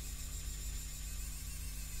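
3D printing pen's filament-feed motor running steadily as it extrudes, a low hum with a faint thin high whine.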